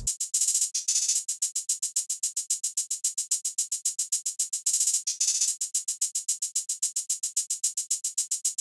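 Programmed trap hi-hat pattern playing solo from a drum machine: fast, even ticks at about seven a second, with quicker rolls about half a second in and again around five seconds in. It is thin and bright with no low end.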